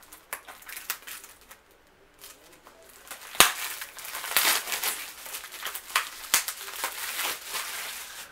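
Plastic shrink-wrap being peeled off a Blu-ray case and crinkled in the hands: a dense run of crackling rustle from about two seconds in, broken by a few sharp clicks.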